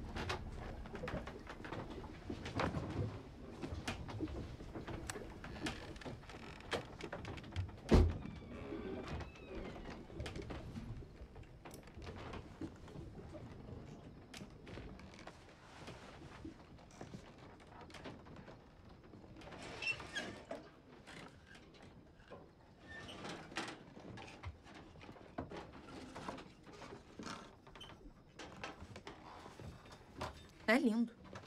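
Quiet background with scattered knocks, creaks and clicks, and a single loud thump about eight seconds in.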